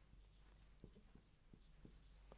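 Faint strokes of a dry-erase marker on a whiteboard as a word is written, a few soft scattered ticks.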